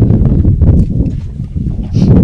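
Wind buffeting the microphone on an open boat at sea: a loud, uneven low rumble with rapid fluttering, easing slightly near the end, with faint voices under it.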